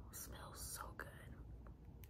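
A woman whispering softly, a few breathy syllables in the first second, then quiet room tone.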